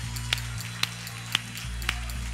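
Live church band playing a brief instrumental gap in a gospel song: a held low chord with a sharp tick on each beat, about two a second.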